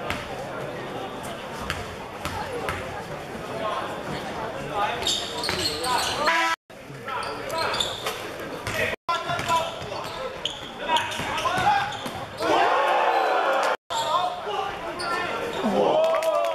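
Indoor basketball game: the ball bouncing on the wooden court, sneakers squeaking in bursts, and players' voices calling out. The sound drops out briefly three times.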